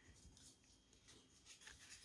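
Near silence: kitchen room tone with faint light rubbing sounds from hands working at the counter.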